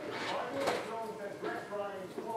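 A faint voice talking in the background, with a brief knock about two-thirds of a second in.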